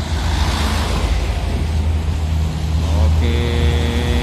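Heavy diesel coach engine running close by with a loud, steady low rumble as a Scania coach pulls past. Near the end a steady horn-like tone sounds for about a second.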